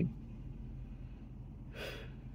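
A man takes one short, quick breath in near the end, over a steady low rumble inside a car cabin.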